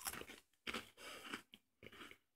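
A person biting into and chewing a crisp biscuit: faint crunching in about four short bursts.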